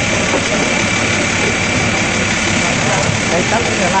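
Fire truck engine idling with a steady, even running noise and a thin high whine, with voices faintly over it.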